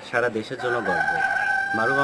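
A single long, steady pitched animal call lasting about two seconds, dipping slightly in pitch at its end.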